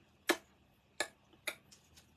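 Three short, sharp clicks about half a second apart.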